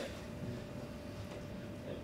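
Quiet room tone with a faint steady hum and no distinct sound events.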